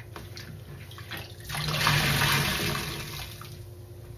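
A soaked foam sponge squeezed in a sink of sudsy rinse water: a few small squelches, then a rush of water pouring out of it that swells about a second and a half in and fades over the next two seconds.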